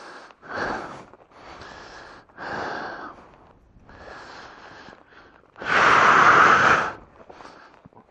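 A man breathing hard, close to the microphone: about five heavy, noisy breaths, each around a second long, the loudest one about six seconds in. He is out of breath at about 4,000 m altitude.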